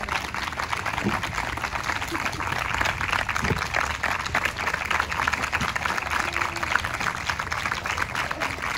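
Audience applauding: a steady patter of many hands clapping, with a few voices mixed in.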